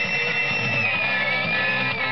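Music with guitar, a long high note rising at the start and held, wavering slightly, over a full band.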